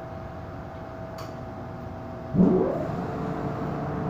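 MTR M-Train's traction motors and inverter starting up as the train pulls away: a low steady hum, then about two seconds in a whine in several tones that rises quickly in pitch and then holds steady.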